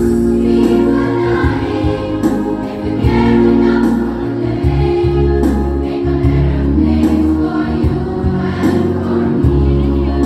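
A choir of girls and women singing together from song sheets, over steady low bass notes.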